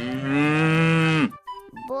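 A cow mooing once: one long, steady low call of a little over a second that bends down in pitch as it cuts off.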